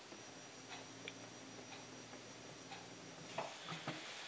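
Faint steady hum of an electric potter's wheel turning slowly, with a few light ticks scattered through.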